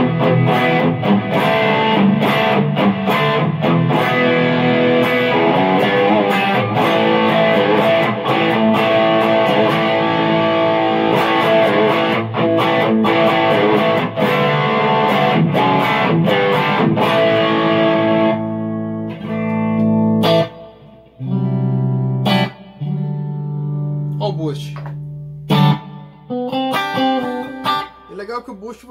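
Electric guitar played through a heavy overdrive preset on a multi-effects floorboard: thick, distorted chords, then from about two-thirds of the way through, sparser single held notes with short pauses between them.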